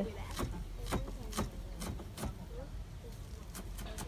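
Kitchen knife chopping shallots and garlic on a wooden cutting board: irregular knocks of the blade hitting the board, about five in the first two and a half seconds, then lighter ones.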